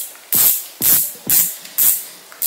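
Oncak Andromeda 1000 spinning reel worked by hand in short spurts, giving four brief hissing whirs about half a second apart.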